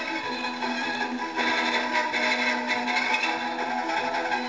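Pathé Diamond portable suitcase gramophone playing a record. The music sounds thin, with no bass, over a steady haze of record surface noise.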